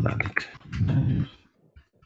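A man's low voice murmuring indistinctly in two short stretches, with a few computer keyboard clicks near the start.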